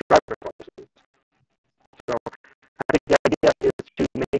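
A man's voice broken into short stuttering fragments, with a gap of about a second in the middle: talk so garbled by a bad call connection that no words come through.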